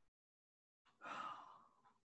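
Near silence, then about a second in a single short, breathy exhale or sigh from the presenter that fades within half a second.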